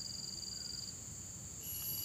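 Insects trilling in the background as several steady high-pitched tones. One pulsing trill stops about a second in, and another, higher one starts near the end.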